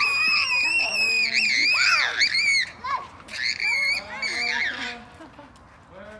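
Children shrieking at play: a long high-pitched scream for about two and a half seconds, then a shorter one, giving way to quieter voices near the end.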